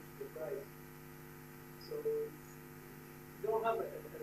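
Steady electrical mains hum, with faint speech from an audience member off the microphone in a few short phrases, louder near the end.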